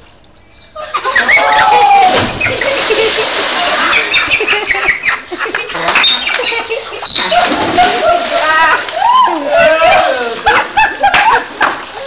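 A splash into a swimming pool about a second in, as someone jumps in from a height, with water churning for a couple of seconds after. Children shriek and shout over it and keep shouting through the rest.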